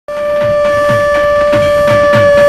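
Channel ident jingle: a single long held note over a quick pattern of low drum hits whose pitch drops on each stroke.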